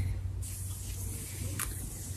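Faint rustling of fingers working cleansing foam through long dry hair, over a steady low hum, with one short brushing sound about one and a half seconds in.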